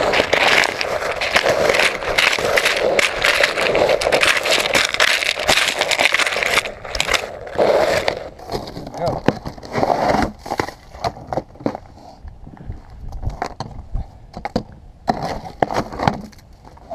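Ice crunching and scraping close to the microphone for about six seconds, then scattered knocks and crackles as chunks of ice are chipped off the rifle.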